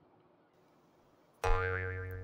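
Near silence for about a second and a half, then a cartoon 'boing' sound effect starts suddenly and rings on with a steady, slightly wavering tone that slowly fades.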